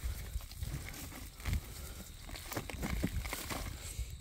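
Rustling and crackling of grass stems and soil as weeds are pulled by hand from a fabric grow bag, over a steady low rumble.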